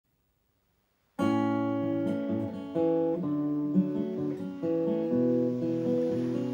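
Silence for about the first second, then an acoustic guitar starts playing the instrumental intro of a folk song: ringing chords that change every half second or so.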